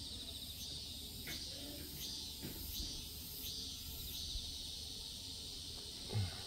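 Faint chirping calls from wild creatures, repeating roughly every two-thirds of a second over quiet outdoor background.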